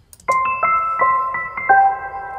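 A software-instrument bell/keys melody from the beat's intro starts about a quarter second in. It is an electric-piano-like tone with new notes about three times a second and no drums under it.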